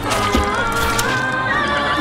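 A horse whinnying, a high quivering call, over music.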